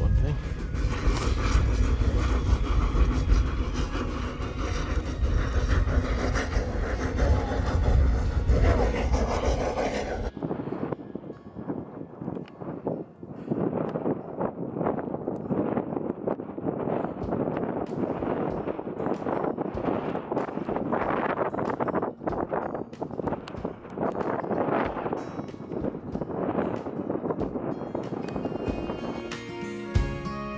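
Strong wind buffeting the microphone, a heavy rumble that cuts off suddenly about ten seconds in, leaving a quieter, irregular rustling. Guitar music comes in near the end.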